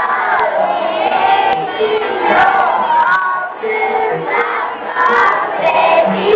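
A group of young children singing together over backing music, many voices at once and loud throughout.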